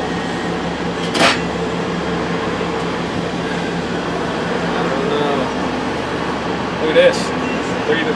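Steady air-conditioning hum inside a tool truck's box, with two sharp clicks, one about a second in and one near seven seconds.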